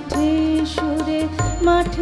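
A woman singing a Bengali song in long held notes to harmonium accompaniment, with percussion strokes keeping a steady beat.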